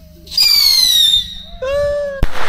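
Hand-held whistling firework going off: a loud, high whistle that falls slightly in pitch for about a second, followed near the end by a shorter, lower held tone.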